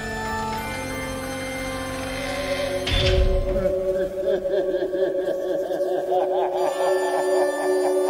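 Electronic trance intro music: sustained synth pad chords, a rising noise sweep that builds into a deep impact about three seconds in, then wavering, warbling synth tones held over the rest.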